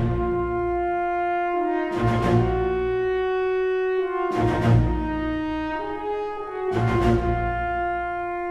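Symphony orchestra playing a slow passage of long, held French horn and brass notes over strings. Loud accented strikes with a low drum-like boom come about every two and a half seconds, three of them here.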